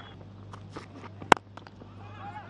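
Low, steady broadcast ground ambience with a constant low hum, broken by one sharp, loud crack about a second and a third in, with a few faint clicks around it.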